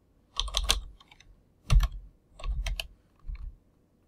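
Typing on a computer keyboard: four short runs of key clicks, about a second apart.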